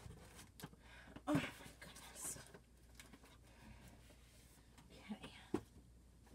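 Faint, scattered rustles and light knocks of flat craft packages and cardboard being handled and set down, with a sharper click about five and a half seconds in.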